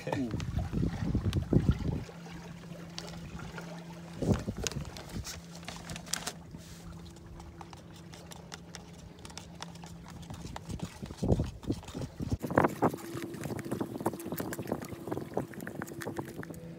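A screwdriver stirring thick flow coat paste in a clear plastic cup, scraping and clicking against the cup in irregular spells. A steady low hum runs underneath.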